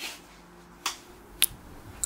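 Leather hide being handled by hand: three short, sharp snaps, the last the crispest, over a faint low hum.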